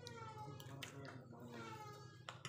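Crunchy puffed-rice chatpate chewed close to the microphone, with a few sharp crunches. A high-pitched call that falls in pitch sounds twice over it, at the start and again about a second in.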